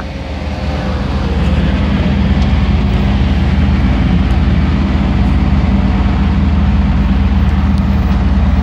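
Van engine and road noise heard inside the cab while driving in traffic: a steady low rumble that grows louder about a second in, then holds.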